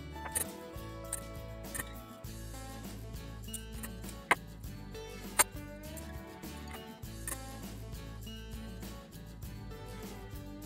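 Background music with slow changing chords, broken by a few sharp clicks, the loudest two about four and five and a half seconds in.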